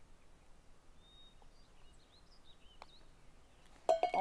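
Quiet outdoor ambience with faint bird chirps, and just before the end a single light click of a putter striking a golf ball.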